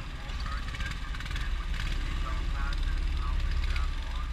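Go-kart engines running, with a heavy low rumble of wind buffeting the onboard microphone and voices faintly in the background.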